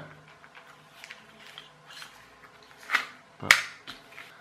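Handling noise from a small home-made plastic toy train with bottle-cap wheels: faint scattered ticks, then two sharp plastic clicks about half a second apart near the end as it is set down on the table.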